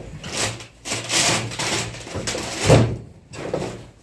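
Power tools being handled and packed into a woven plastic shopping bag: hard tool bodies knocking against each other and the bag rustling, in irregular bursts, with the loudest knock near three seconds in.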